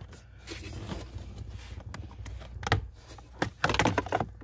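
Plastic clips on a truck's cabin air filter access cover snapping loose and the cover being pulled off its housing: a few sharp clicks and plastic knocks, bunched near the end, over a low steady hum.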